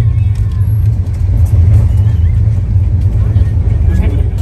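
Steady deep rumble of a moving passenger train, heard from inside an Indian Railways AC sleeper coach.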